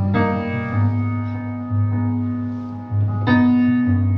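Solo piano intro played on a stage keyboard: sustained chords over low bass notes, with a new chord struck just after the start and again about three seconds in.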